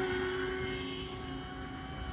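E-flite Convergence VTOL's electric motors and propellers in multirotor hover: a steady propeller hum made of several held pitches, growing slightly quieter.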